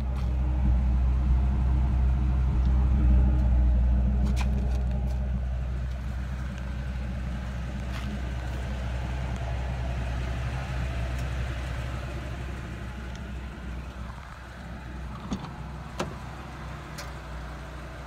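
1999 Ford F-350 Super Duty's 6.8-litre Triton V10 idling steadily. It is loudest at first and grows fainter over the following seconds, with a few light clicks near the end.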